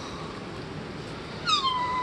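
A cat meowing: one long, high-pitched call that starts about one and a half seconds in, dipping slightly in pitch and then holding.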